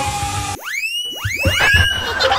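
Background music, then about half a second in a run of rising, whistle-like cartoon sound effects, several quick swoops overlapping one another.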